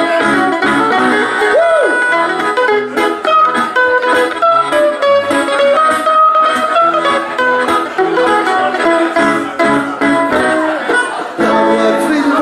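Amplified mandolin playing a fast picked lead melody in an instrumental break of a live folk-punk song, over a strummed band accompaniment.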